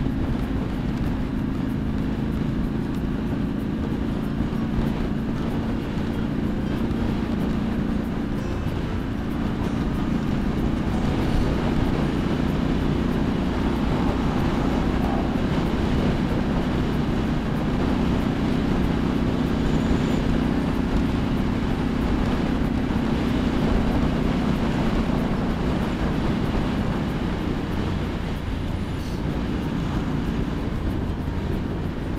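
2017 Triumph Street Scrambler's 900 cc parallel-twin engine running steadily at freeway cruising speed, mixed with heavy wind rush and road noise on a helmet-mounted microphone.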